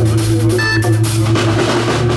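Live roots-reggae band playing: electric bass holding steady low notes under a drum kit's beat, with a saxophone at the microphone.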